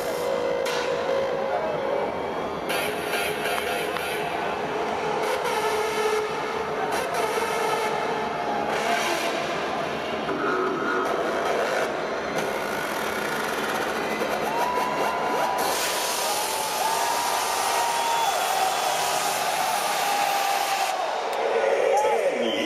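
Dense crowd noise of thousands of people in a large arena hall: overlapping chatter and shouting with scattered whistles and long held calls, rising slightly near the end.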